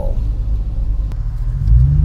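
Car engine and road rumble heard from inside the cabin while driving slowly. Near the end the engine note rises and gets louder as the car speeds up.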